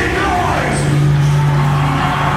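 A gothic metal band playing live through a concert PA. Just before this the drumming was dense; here it thins and a low note is held steady from about half a second in.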